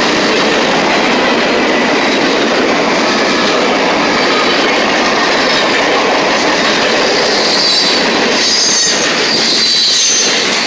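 Freight cars rolling past close by: a loud, steady rush and clatter of steel wheels on rail. High-pitched wheel squeal joins in from about seven and a half seconds in.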